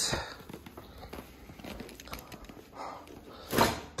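Faint rustling and handling of the charging-cable bag, then a short, louder rustle and thud about three and a half seconds in as the bag is set down on the ground.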